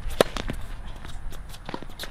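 Tennis racket striking the ball on a forehand, one sharp crack a fraction of a second in, followed by a few fainter clicks and footsteps on the hard court.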